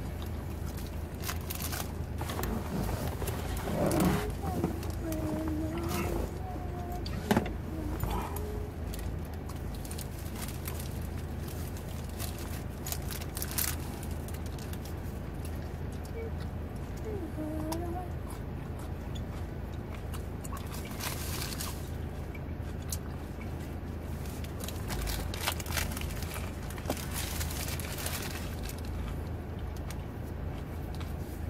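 Eating sounds: a wrapped sandwich being bitten and chewed, with its paper wrapper crinkling in scattered crackles, over a steady low hum. A few short hummed sounds come early on and again about halfway through.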